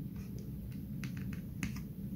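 Faint, sharp clicks and taps, about half a dozen, from fingers handling a circuit board and fitting small spacers into its mounting holes, over a low steady background hum.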